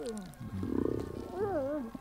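Wordless vocal sounds from a cartoon character: a falling groan, then a low rumble about half a second in, then a wavering, moaning hum near the end.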